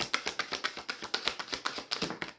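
Tarot deck being shuffled by hand, overhand style, packets of cards slapping against each other in a rapid run of clicks, about a dozen a second.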